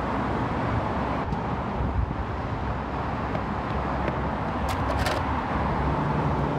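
Steady noise of cars passing on a busy road, a continuous rumble with no break. Two brief clicks come a little before the end.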